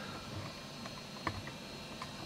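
Quiet room tone with a faint steady hum and a few soft, scattered clicks.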